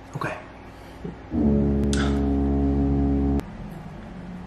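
A loud, steady, droning horn-like tone with a buzzy stack of overtones. It sounds again from about a second and a half in for two seconds and then cuts off abruptly. An annoying noise from off camera.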